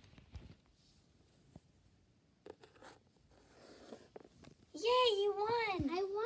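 Faint rustling and a few light clicks of toys being handled on a carpet, then a high-pitched, sing-song voice starts near the end.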